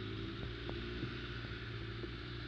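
ATV engine running at a steady pace while riding a rough dirt trail, with a rushing noise of wind and tyres and a few short sharp ticks of knocks and rattles.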